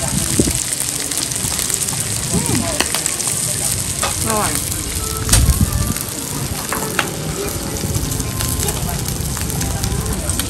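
Pork and seafood sizzling steadily on a Thai mu kratha grill pan and a tabletop grill. A few sharp clicks sound over it, the loudest a little past halfway.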